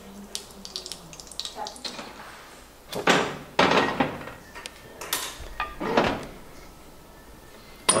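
Kitchen clatter of pots and pans being handled on a gas stove, with a few louder clattering knocks about three to four seconds in and again near six seconds.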